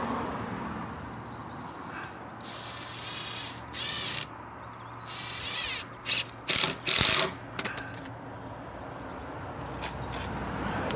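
Cordless drill driving screws through a steel hinge plate into timber. One longer run comes about two and a half seconds in, then a quick string of short, louder bursts a few seconds later as the screws are driven home.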